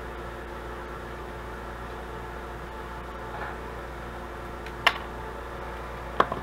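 Steady mechanical room hum, with one sharp metallic click about five seconds in as jewellery pliers close a jump ring on a metal charm tag.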